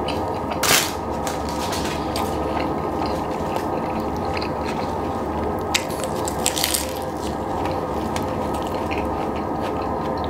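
A person biting into and chewing a burger, close to the microphone: one loud bite about a second in, then chewing with a few sharp wet clicks a little past the middle, over steady background noise.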